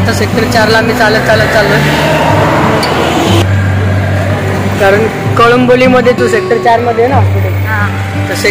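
Road traffic on a busy street, a steady low rumble of vehicles, with voices talking over it. The sound changes abruptly about three and a half seconds in.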